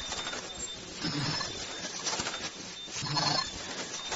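Automatic KN95 mask-making machine running, with a louder burst repeating about every two seconds as the machine cycles, twice here, over a steady mechanical background with a faint high tone.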